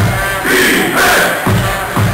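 Large crowd of football fans chanting and shouting over loud music, with a regular pulsing beat about twice a second.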